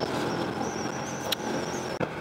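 Yamaha LC135 motorcycle's single-cylinder four-stroke engine running steadily while riding, mixed with road and wind noise, with a thin high whine and one brief click a little past halfway.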